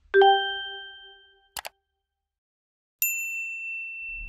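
Subscribe-animation sound effects: a low chime that fades over about a second and a half, a quick double mouse click, then a bright high bell ding about three seconds in that rings on.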